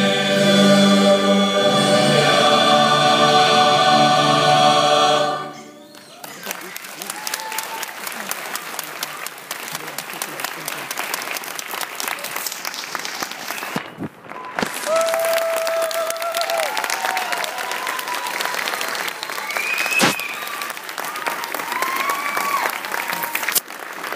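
Choir singing a final held chord that cuts off about five seconds in, followed by audience applause.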